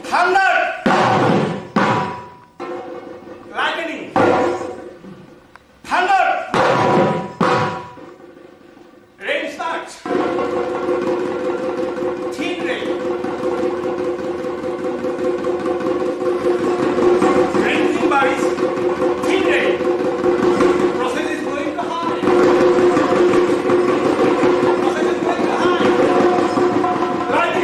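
Assamese dhol drums played with a stick and the hand. For the first ten seconds there are separate strokes that ring and bend in pitch, with short pauses between them. From about ten seconds in the playing becomes a fast, unbroken roll.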